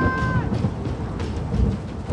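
A long, drawn-out call of a woman's name, "Siobhán!", ending about half a second in, over a low rumbling film score.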